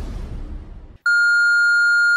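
A fading wash of trailer sound effects dies away, then about a second in a voicemail system's record tone starts: one long, steady electronic beep.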